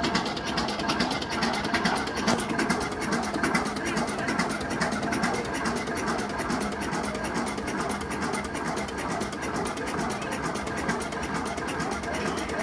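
Schlüter two-cylinder stationary diesel engine running steadily, a fast even knocking beat from its firing.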